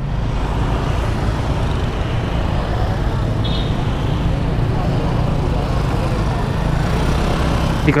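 Motorcycle engine running steadily while riding, mixed with road and wind noise on the rider's camera microphone.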